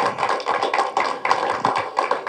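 Applause: a group of people clapping their hands, a dense run of overlapping claps.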